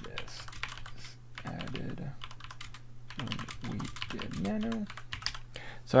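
Typing on a computer keyboard: a quick, uneven run of key clicks as a sentence of text is entered.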